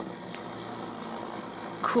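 Toy gyroscope spinning freely on a hard desktop just after its pull-string start, giving a steady high-pitched whir.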